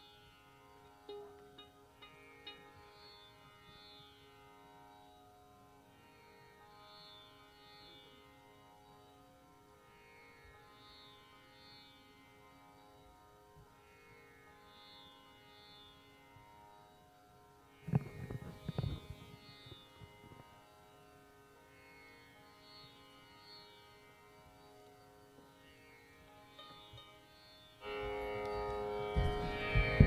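Faint, steady tanpura drone, its repeating plucked cycle shimmering in the upper overtones. A few loud thumps come about 18 seconds in, and a louder rumbling noise sets in near the end.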